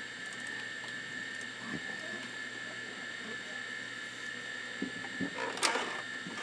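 Steady electronic whine and hum of running vintage computer equipment: an Amiga 500 with its external GVP hard drive and CRT monitor. Faint mouse clicks are scattered through it, and there is a short handling clatter near the end.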